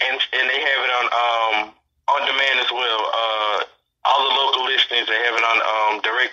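Speech only: a man talking, broken twice by short gaps of complete silence.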